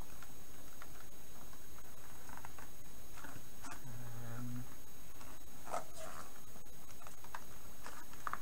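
Cardboard packaging being handled and torn open along a perforated line: scattered small rustles and clicks, with a few sharper flicks in the second half. A person gives a short hummed 'mm' about four seconds in.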